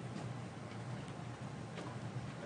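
Quiet room tone: a steady low hum with a few faint, irregular clicks.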